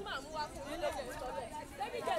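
Indistinct voices talking, softer than close-up speech.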